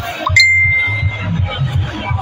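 A single sharp, bell-like ding about a third of a second in, its one high tone ringing for about a second, over background music with a steady low beat.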